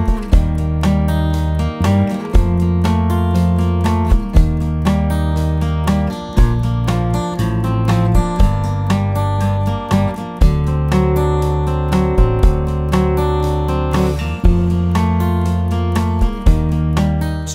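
Martin D-28 dreadnought acoustic guitar, capoed, played with a pick in a steady arpeggiated pattern, picking single strings of each chord in turn. Deep sustained bass notes sit underneath and change every couple of seconds.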